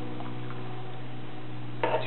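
Steady low electrical hum with a couple of faint ticks about a fifth and half a second in.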